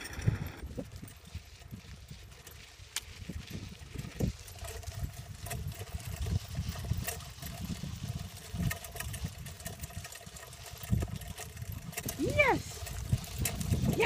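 Low rumble and irregular small knocks of a suspension sulky rolling over a dirt track behind a team of pulling dogs.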